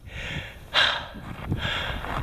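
A man's heavy breathing, two loud breaths about a second apart. He is out of breath and overcome after a long, hard mountain-bike climb.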